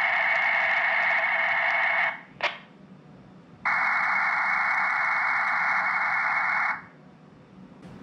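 Ribbit/Rattlegram digital text-message bursts, each a dense, noise-like rushing data signal lasting about three seconds. The first comes in over the Baofeng handheld's speaker from the FT3D transmission and cuts off about two seconds in with a short squelch-tail click. After a pause, a second burst of about three seconds follows: the phone in parrot mode playing the decoded message back out.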